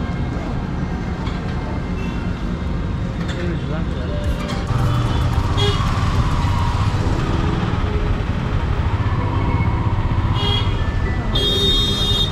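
Motorcycle engine and road noise, idling at first and then louder as the bike pulls away into traffic about five seconds in. A vehicle horn sounds briefly near the end.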